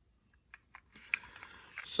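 A few light plastic clicks and faint handling noise from a small plastic dashboard trim piece being handled, starting about half a second in.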